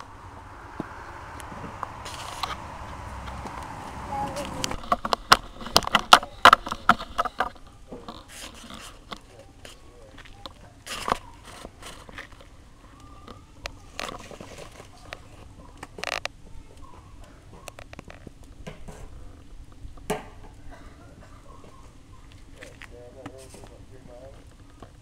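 Sticks of firewood knocking and clattering as they are handled and dropped on a woodpile on pavement. A quick run of sharp clacks comes about five seconds in, then scattered single knocks.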